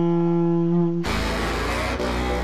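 A tenor saxophone holds one steady note, then about halfway through the sound cuts abruptly to loud band music with heavy bass.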